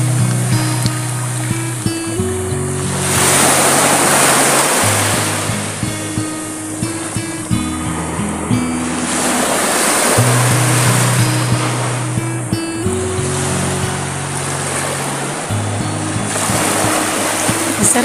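Small waves breaking and washing up a pebble-and-sand shore, each swell rising and falling about every six to seven seconds, under background music with slow sustained low chords.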